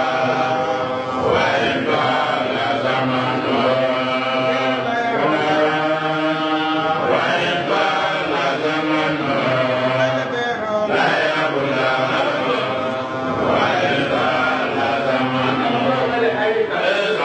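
A man chanting in long, drawn-out phrases of held and wavering notes, with short breaks between phrases.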